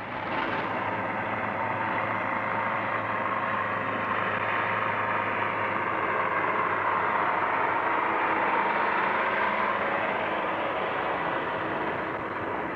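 Small diesel locomotive of a narrow-gauge beach train running at a steady pace as it hauls its carriages, its engine a constant low hum.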